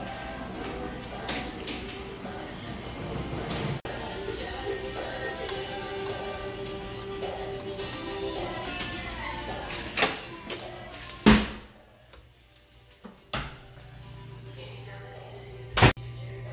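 Music plays for the first ten seconds or so. Then a door is handled: a few sharp clicks and knocks, the loudest about eleven seconds in, then a steady low hum. Another sharp bang comes near the end.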